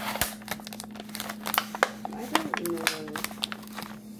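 Thin plastic film wrapper of a Lunchables pizza kit crinkling as it is handled and pulled off the plastic tray, a quick irregular run of crackles.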